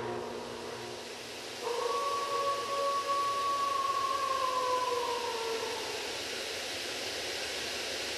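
A single long wolf howl begins about two seconds in, holds one pitch, then slides down as it fades, over a faint steady hiss.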